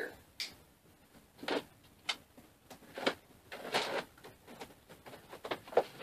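A cardboard shipping box being opened by hand: its packing tape is cut and its flaps are pulled back. The sound is a series of short, irregular scrapes, rips and rustles of cardboard.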